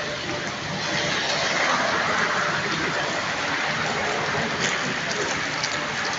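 Steady hissing outdoor street ambience, slightly louder from about a second in.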